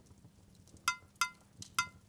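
Three light metallic clinks, a hard, shiny metal object being tapped, each ringing briefly at a clear pitch.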